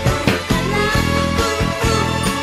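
Fingerstyle electric bass, a sunburst four-string Jazz Bass-style bass, playing a pop bass line along with a full band recording.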